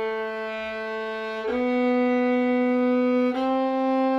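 Solo violin bowed in slow, even half notes up a G major scale, each note held about two seconds; the pitch steps up twice, from A to B to C.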